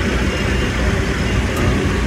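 Steady low rumble of car engines idling in a busy car park, with faint voices in the background.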